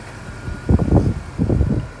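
Two bursts of low rumbling microphone noise about a second apart, over a faint steady hum.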